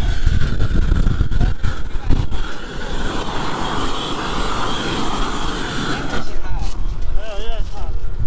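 Propane roofing torch running with a steady hissing roar while it heats a roof membrane seam. Wind buffets the microphone for the first couple of seconds, and the torch is heard most clearly in the middle of the stretch.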